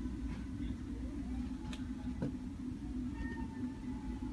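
Steady low room hum with a couple of faint whining tones above it and a few faint clicks.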